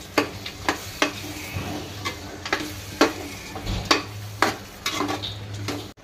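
A metal ladle stirring chicken and masala in a metal cooking pot, knocking and scraping against the pot about once or twice a second, over the low sizzle of the masala frying.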